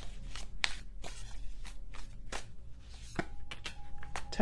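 A deck of tarot cards being shuffled by hand: a quick, irregular run of sharp card clicks and flicks.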